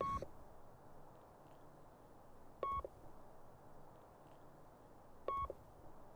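Camcorder's electronic beeps: three short, high single-pitched beeps about two and a half seconds apart, each with a soft click at its start, over faint room hiss.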